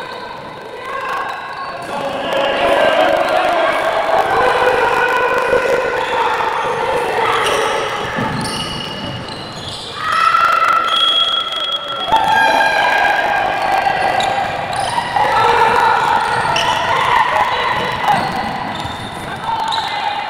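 A handball bouncing on a hardwood court during play, with voices shouting and calling over it for most of the time.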